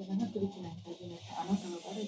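A faint voice talking quietly under a steady hiss.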